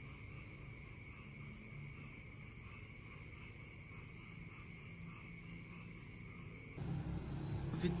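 A faint chorus of night insects calling in steady, unbroken high-pitched tones. Near the end it cuts abruptly to a louder, lower background noise.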